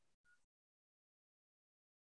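Near silence: the sound track drops to nothing.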